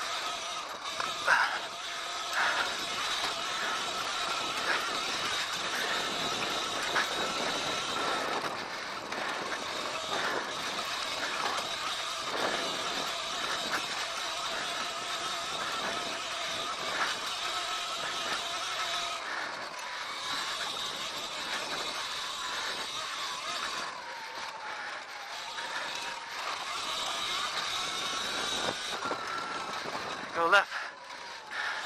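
Sur-Ron Light Bee electric dirt bike riding over a rough, rocky track: the electric motor's steady whine over rattling from the bike. A few sharp knocks come in the first seconds, and late on the whine dips in pitch and climbs back.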